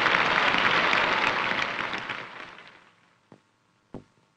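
Cricket crowd applauding: dense clapping that dies away over about a second and is gone before the last second. Two short faint clicks follow near the end.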